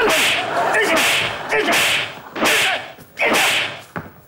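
A string of hard slapping blows, about five in four seconds, each followed by a short falling cry of pain as a man is beaten.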